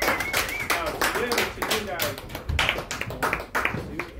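A small audience clapping and calling out at the close of a stand-up set, the clapping thinning out near the end.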